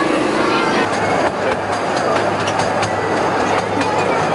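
Theme-park ride train with carriages moving off about a second in: a steady low hum with a run of sharp clicks from the wheels on the track.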